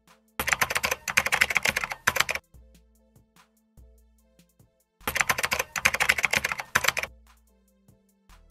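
Two bursts of rapid computer-keyboard typing, each about two seconds long, with a pause of about three seconds between them, over quiet background music.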